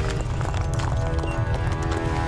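Dramatic TV background score: held orchestral notes over a fast, driving percussion rhythm.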